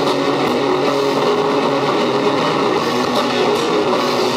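Heavy metal band playing live: distorted electric guitar and bass guitar over drums, loud and dense, with cymbal strokes cutting through now and then.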